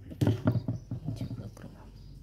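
A man speaking briefly, with a few light knocks as a chrome motorcycle turn-signal unit is picked up off the table.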